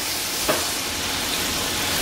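Battered chicken pieces frying in hot oil, a steady sizzling hiss, with a light click about half a second in.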